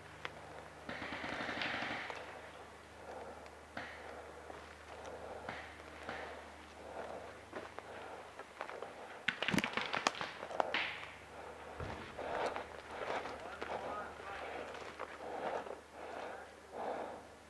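Paintball markers firing: scattered single pops, then a quick burst of several shots about nine to ten seconds in. Distant players' voices call out now and then.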